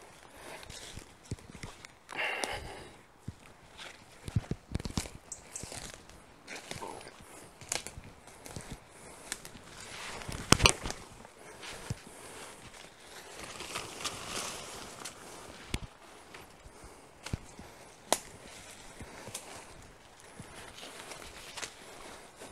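Footsteps through woodland undergrowth: irregular crunching and rustling of leaves and brush, with one sharp crack about halfway through that is the loudest sound.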